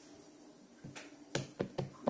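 A quick run of four or five sharp hand taps or pats close to the microphone, mostly in the second half, the loudest a little before the end.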